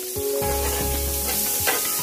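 Sliced red bell pepper and onion sizzling steadily in hot bacon fat on a griddle.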